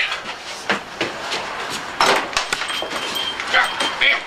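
A man hurrying from a table to a door: chair and footstep scuffs and scattered knocks, with a louder clatter about halfway through and brief grunts.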